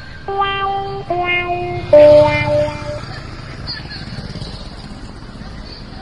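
A comic sound effect of three held notes stepping down in pitch, the last one longest and loudest. It is followed by steady street traffic noise.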